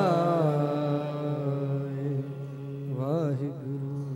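A male kirtan singer holding a long drawn-out note of a Sikh hymn over a steady harmonium, with a short wavering run about three seconds in. The sound fades toward the end as the hymn is brought to a close.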